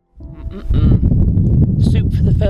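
Wind buffeting the camera microphone in loud, rough gusts, cutting in suddenly, with a woman's voice speaking indistinctly over it.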